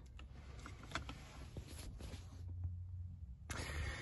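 Quiet handling noise: a few faint clicks and light rustling as a small dashboard clock unit is turned over in the hand, over a low hum.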